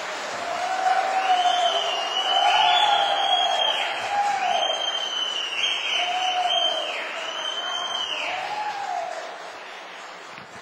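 Audience in a council chamber applauding and cheering with repeated shouts, building up in the first second and dying away near the end.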